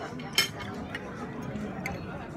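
A metal spoon clinks once, sharply, against a ceramic soup bowl a little under half a second in, with a fainter clink near the end, over background chatter.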